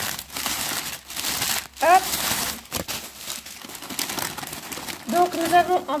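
Crumpled newspaper packing rustling and crinkling as hands dig through it and pull it out of a cardboard box, in a stream of rustles for about five seconds.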